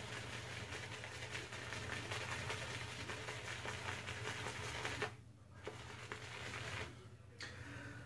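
Badger-style shaving brush being swirled and scrubbed on a hard shaving-soap puck to load it with soap, a steady fine bristly scrubbing that pauses briefly twice near the end.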